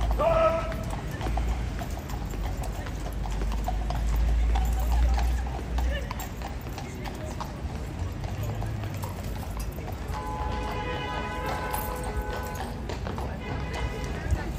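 Shod hooves of a Household Cavalry horse clip-clopping at a walk on the paved yard, with a low rumble of wind on the microphone in the first half. About ten seconds in, a long steady pitched call sounds for a few seconds.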